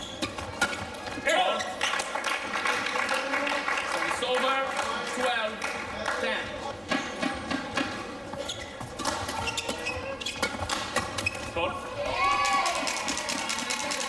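Badminton rackets striking a shuttlecock in fast doubles rallies: a quick run of sharp clicks, with short shoe squeaks on the court floor near the end.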